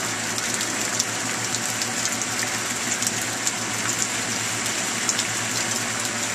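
Steady rain falling, an even hiss with scattered ticks of individual drops, over a faint steady low hum.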